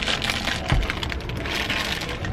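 Plastic wrapping of a marshmallow candy package crinkling as it is handled, a dense run of small crackles.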